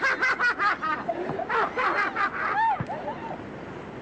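A person laughing in short, quick bursts, in two runs, dying away about three seconds in.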